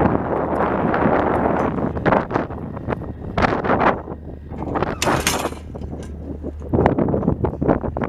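Wind buffeting the microphone in uneven gusts, strongest about five seconds in, over a steady low hum.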